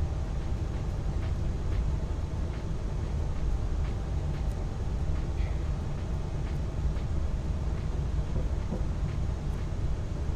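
A steady low rumble of background room noise, with faint light ticks every half second or so.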